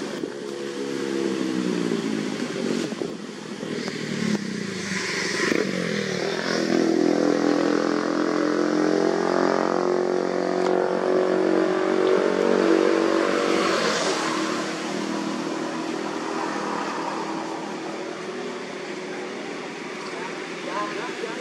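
A motor vehicle engine, likely a motorcycle, running and passing by. Its pitch falls at first, then rises and holds steady, loudest in the middle before it fades.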